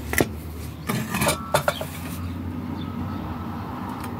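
Sharp metallic clinks and knocks of chrome-plated brass faucet parts being handled and knocked together: one just after the start, then a quick cluster about a second to a second and a half in. A steady low hum runs underneath.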